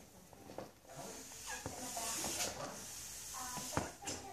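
Soft, steady hiss of breath being blown into an inflatable play ball to refill it after it lost some air.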